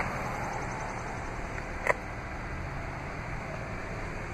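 Steady low hum and hiss of a 2015 Jeep Cherokee Trailhawk's 3.2-liter Pentastar V6 idling after a remote start. One brief click about two seconds in.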